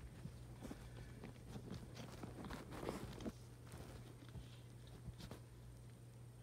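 Faint rustling and small taps of a loose pile of baseball cards being gathered up and restacked by hand, busiest in the first half and then thinning out.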